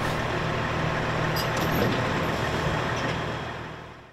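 Heavy trucks' diesel engines idling steadily, with a few faint clinks in the middle; the sound starts abruptly and fades near the end.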